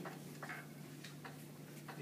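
A few faint, irregular taps and clicks of a marker pen on an overhead projector transparency as a numeral is written, over a steady low hum.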